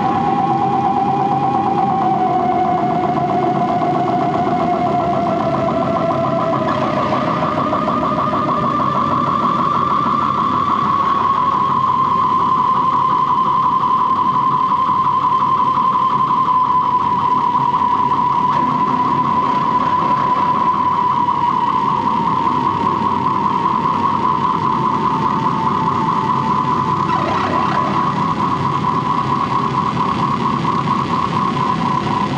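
Live harsh-noise electronics played through effects pedals and a mixer: a loud, continuous wall of distorted noise with a warbling, siren-like feedback tone on top. The tone slides upward about six seconds in and then holds at a higher pitch.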